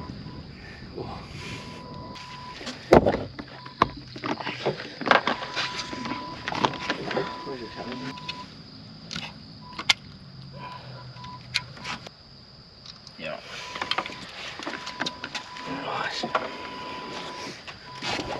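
Knocks and thumps of a large barramundi being handled and laid on a measuring mat on a boat deck, with a sharp knock about three seconds in. A thin steady tone comes and goes throughout.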